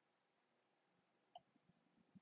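Near silence: room tone, with one faint short click a little past halfway.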